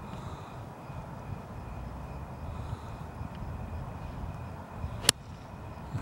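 A single sharp click about five seconds in, over a steady low outdoor background rumble: a golf iron striking the ball on a full swing.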